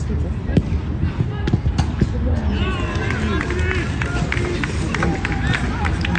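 Match sound from a youth football game: players' voices calling out on the pitch, with scattered sharp thuds over a steady low hum.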